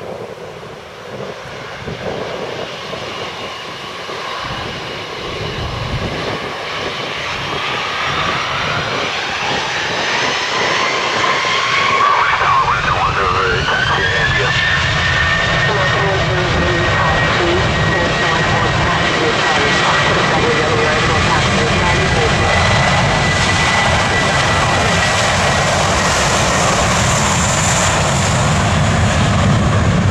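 Twin jet engines of a JetBlue Airbus A320 spooling up to takeoff thrust: a whine rises in pitch and then holds steady, while a deep rumble grows louder as the takeoff roll begins.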